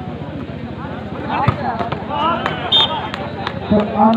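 Crowd of spectators and players calling out and chattering during a volleyball rally, with a few sharp slaps of the ball being struck.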